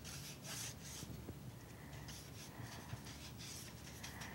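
Paintbrush stroking and dabbing paint across Arches watercolour paper, heard as a series of faint, irregular scratchy swishes.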